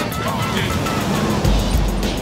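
Road traffic noise: a steady hiss of passing cars, with a low rumble from a vehicle going by near the end.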